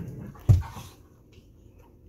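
Two dogs play-wrestling, with one short, loud, low-pitched burst from the tussle about half a second in, then quieter shuffling.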